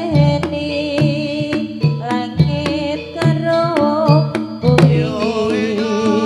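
Live Javanese jaranan accompaniment: hand-drum strokes in a steady rhythm about twice a second, sharp struck percussion hits, and a held, wavering melody line over them.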